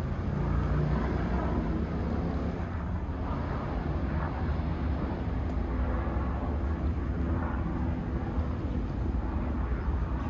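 Outdoor street ambience carried by a steady low engine rumble, with no single event standing out.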